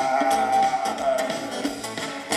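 Live band playing an instrumental passage with a long held note over the rhythm.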